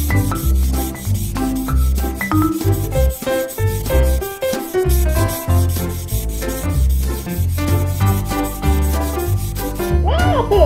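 Felt-tip marker rubbing and scratching on paper in short back-and-forth strokes while filling an area in black, over background music with a steady bass beat and a light melody.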